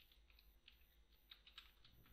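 Faint typing on a computer keyboard: a quick run of separate keystrokes, about ten in two seconds.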